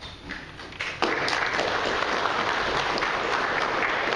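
A room full of people applauding. The clapping starts suddenly about a second in and goes on steadily.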